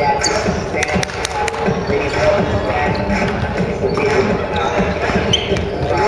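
Pickup basketball game on a wooden gym court: the ball bouncing, with a few sharp knocks about a second in, and players' voices mixed in, all echoing in the large hall.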